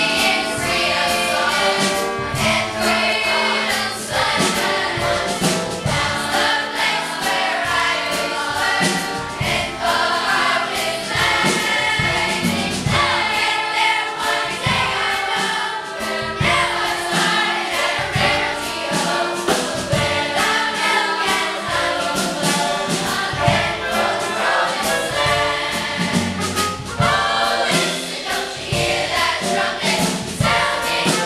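Sixth-grade children's choir singing together, with a steady rhythmic accompaniment underneath.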